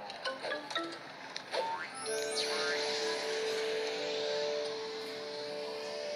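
Cartoon background music and sound effects: short clicks and brief notes, then about two seconds in a rising whoosh that gives way to a long held chord.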